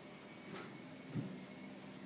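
Quiet room tone with a faint short low thud a little past a second in and a weaker one about half a second in.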